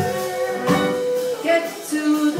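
Live band with keyboard, drums and guitar playing under a singer, who holds one long steady note for most of the first second and a half before moving to shorter notes.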